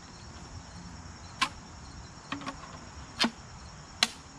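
Sharp plastic clicks and knocks as the plastic blower tube is pushed onto the nozzle of a SnapFresh 20V cordless leaf blower: four or five separate clicks spread about a second apart. The tube has not yet latched, because it is not being pushed hard enough.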